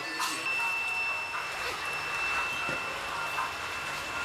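Busy street-side shop ambience: a steady hiss of background noise with faint distant voices, a light click near the start, and a thin steady high-pitched whine that starts just after it.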